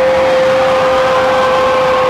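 A single long note held dead steady in pitch through the concert sound system, after a short slide down into it.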